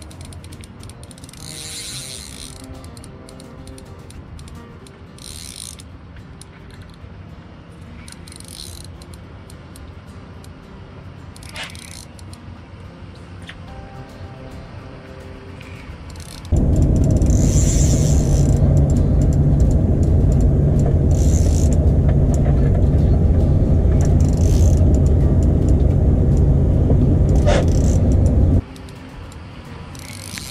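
Spinning reel being cranked and ratcheting under a fish's pull, over quiet background music. About halfway through, a loud, steady low rumble cuts in suddenly, runs for about twelve seconds and stops abruptly.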